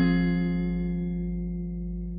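Acoustic guitar's closing chord ringing out and slowly fading at the end of the song, with no further notes played.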